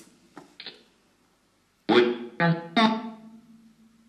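Echovox 2.0 spirit-box app on a phone putting out short, echoing, voice-like fragments: three clipped bursts about two seconds in, each trailing off, then a low steady hum. The fragments come in answer to a question put to spirits.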